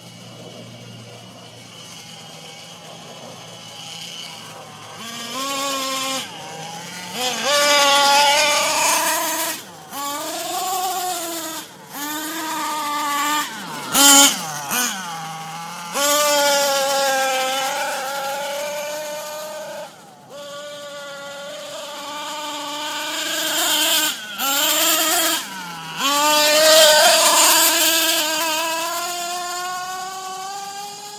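Radio-controlled toy car's motor whining, its pitch rising and falling in short throttle spells that cut off suddenly, ending in a long rising whine. A sharp click about fourteen seconds in is the loudest moment.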